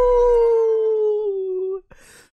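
A man's voice holding one long, high note that slides slowly downward, like a howl, and breaks off near the end. The music's bass fades out under it about half a second in.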